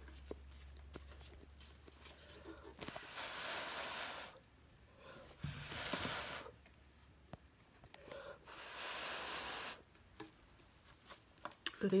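Three long puffs of breath blown onto wet poured acrylic paint, each about a second of breathy hiss, pushing the paint outward into a bloom.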